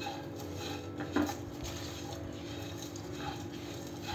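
A spatula stirring and scraping dry whole spices (cumin, carom seeds, peppercorns, black cardamom pods, cloves) around a hot nonstick kadhai, with one light knock about a second in. The gas is off and they are kept moving so they don't scorch in the still-hot pan.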